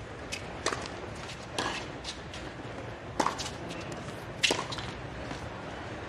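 Tennis ball struck by rackets in a hard-court rally that opens with a serve: a string of sharp pops spaced about one to one and a half seconds apart, over a steady low crowd hum.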